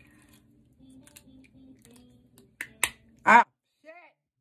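Two sharp clicks as a clear plastic aligner is pushed onto the teeth, then right after a short, loud cry of pain from the woman fitting it.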